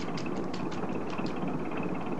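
A car running, heard as a steady hum of engine and road noise with faint light ticks.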